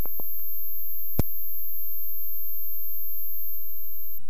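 Steady low electrical hum from the recording with a thin high-pitched whine over it, broken by a single click about a second in.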